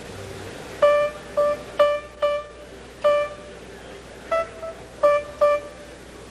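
A single high note on a stringed instrument, played about nine times in short, separate, unevenly spaced notes, with one slightly higher note a little past the middle, as if that one note is being checked.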